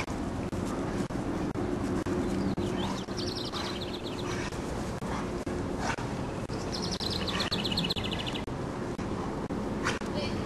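Outdoor ambience with a steady low hum throughout. A bird sings a rapid high trill twice, about three seconds in and again around seven seconds, over a few soft knocks.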